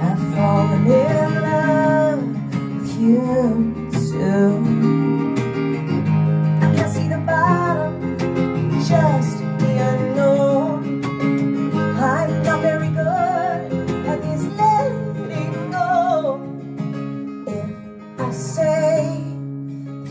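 Live acoustic song: a strummed steel-string acoustic guitar with keyboard accompaniment, and a woman's voice carrying a gliding melody over it.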